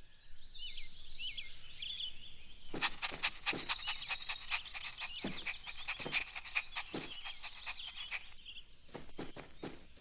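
Cartoon backyard ambience of small birds chirping, with a steady buzzy trill joining about three seconds in. A run of quick, irregular light taps starts just before three seconds in and runs until near the end.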